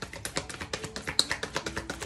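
Deck of oracle cards being shuffled by hand: a fast run of clicks and flicks as the cards slide and drop against one another.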